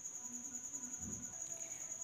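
A cricket chirping steadily: a continuous high-pitched pulsing trill in the background. A faint soft thump comes about a second in.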